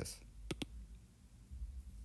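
Two sharp taps about a tenth of a second apart, about half a second in: a stylus tapping the tablet's glass screen.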